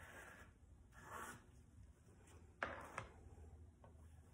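Near silence with faint rustles of a sheet of paper being handled with a gloved hand, and one short sharp click about two and a half seconds in.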